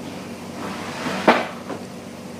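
A single sharp knock about a second in, followed shortly by a fainter one, over a faint steady room hum.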